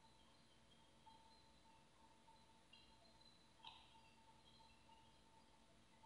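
Near silence: faint room tone, with one faint click a little past halfway.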